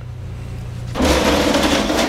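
Metal hospital case cart rolling over a hard floor as it is pushed, a loud steady rolling noise that starts about halfway through, after a low steady room hum.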